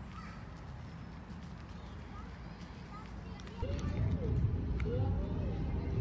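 Low rumble of wind or handling noise on the microphone begins about three and a half seconds in. Over it come two short rising-and-falling vocal calls about a second apart, from either the young hooded crow or the woman.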